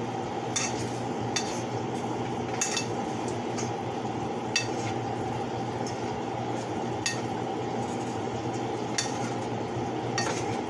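Chicken chunks sizzling in a frying pan on the stove while a metal spatula stirs them, clinking and scraping against the pan now and then.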